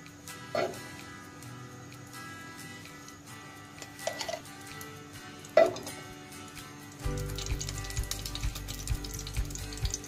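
Background music over food sizzling as it fries in a pan, with a few sharp utensil clinks. About seven seconds in, the music gets louder with a low beat.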